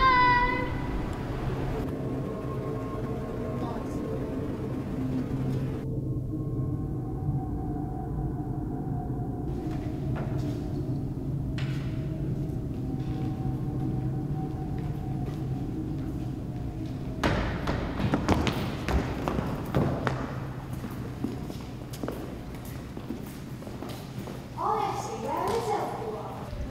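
A low, held drone with a struck, ringing note at the start. About two-thirds of the way in there are several seconds of footsteps and knocks on a wooden hall floor, and children's voices come in near the end.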